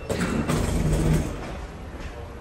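Footsteps along an airport jet bridge over a low, steady rumble, louder in the first second or so.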